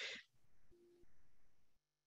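Near silence on an online call: faint hum with a weak low tone, dropping to complete silence near the end.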